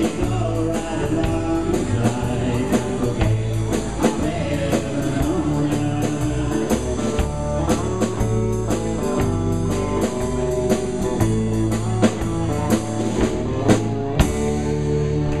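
Live band playing a blues-rock song on drum kit, bass and electric guitars, with a sung vocal over a steady drum beat.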